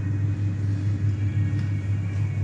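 Steady low hum inside a passenger lift car standing with its doors open, with no change in pitch or level.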